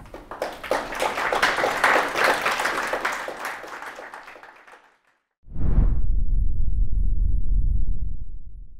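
Audience applause: dense clapping that swells and then dies away over about five seconds. After a brief silence a deep low boom with a short hiss at its start sets in suddenly and holds: the sound effect of an animated logo sting.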